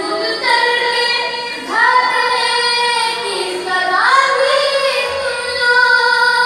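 A boy singing solo in long, drawn-out notes, each new phrase opening with an upward slide in pitch.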